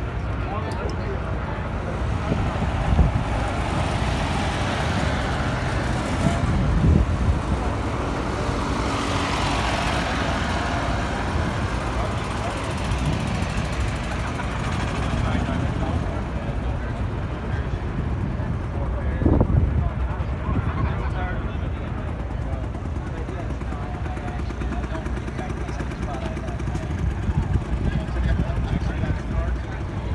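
Busy outdoor ambience: many people talking in the background over a steady low rumble of engines, with a few brief louder swells.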